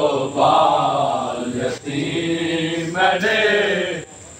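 Men's voices chanting a Punjabi noha, a Muharram lament, in long drawn-out, wavering lines, with a short break a little before two seconds in.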